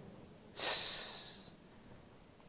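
A man's single sharp breath of air, with no voice in it, starting suddenly about half a second in and fading away within a second.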